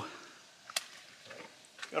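A quiet pause with one short, sharp click about three-quarters of a second in, against faint outdoor background.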